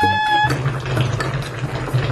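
A woman's voice holding one long high 'aah' on a steady pitch, breaking off about half a second in, over background music with a steady bass line. The music carries on with light clicks after the voice stops.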